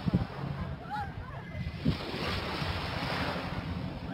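Shallow sea water washing and lapping at the shore, with steady wind noise on the microphone and a couple of low bumps.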